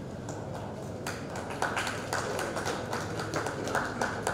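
Light, scattered hand clapping from a small group, starting about a second in as sharp, uneven claps over a steady room hum.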